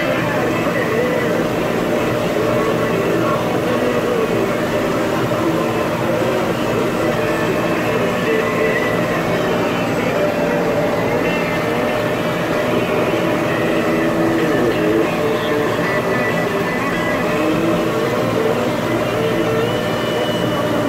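Tractor engine running steadily under load as it pulls a working manure spreader, heard from inside the tractor cab.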